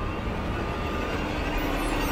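A low rumble, like a vehicle drawing near, growing slowly louder; a steady tone joins about a second in and a rising whine starts near the end.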